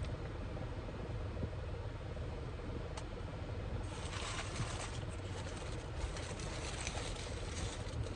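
Steady low rumble inside a parked car's cabin, with a single click about three seconds in and dense close-up crackling from about four seconds in.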